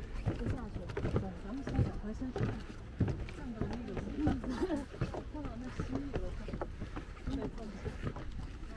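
Indistinct conversation among a group of people walking together, too unclear to make out words, over a steady low rumble on the microphone.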